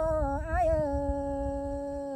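A single voice singing a long held note in a Tai Dam (Black Thai) folk song. The pitch wavers briefly near the start, then is held steady on one tone.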